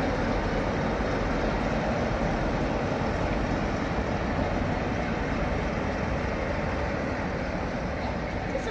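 Steady rumbling and rolling noise of a passing train led by Class 47 diesel locomotives, followed by coaches.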